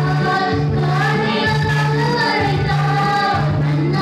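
Two women singing a gospel worship song together into microphones, with an electronic keyboard playing a steady, repeating bass and chord accompaniment.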